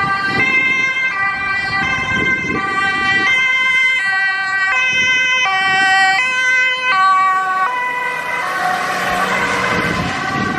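Ambulance two-tone siren, stepping between a high and a low tone about every half second, with engine and road noise beneath. Near the end the tones smear and road noise rises.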